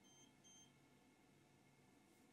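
Near silence: room tone, with two very faint, short high-pitched electronic beeps about a third of a second apart near the start.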